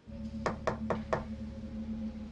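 Four knocks on a door in quick succession, about a quarter second apart, over a steady low hum.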